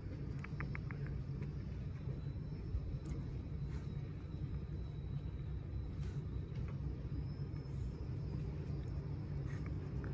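Steady low outdoor rumble, with a quick run of four faint ticks about half a second in.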